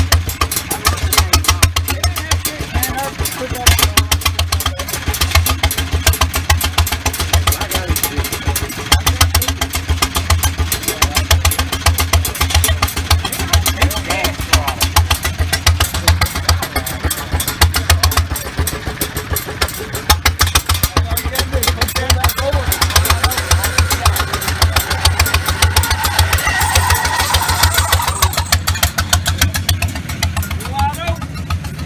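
Rat rod motorcycle's open-piped engine running with a rapid, even train of exhaust pulses. It gets busier and higher near the end as the bike pulls away.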